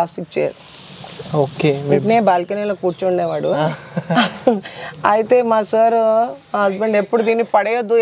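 Speech: a person talking in short phrases. There is a soft hiss in the first couple of seconds.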